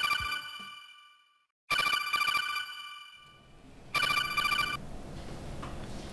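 Electronic phone ringtone ringing in three short bursts of bright notes, about two seconds apart, with brief silence between rings.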